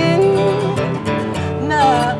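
Two acoustic guitars strummed with male voices singing a pop melody. There are held, gliding sung notes near the start and again near the end.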